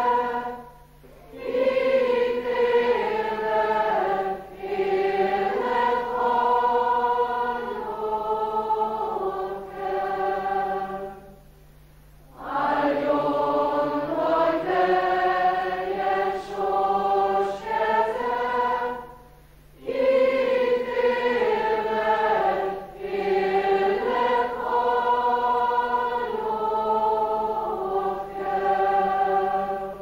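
A large mixed choir of young men and women singing, in long phrases broken by three short pauses.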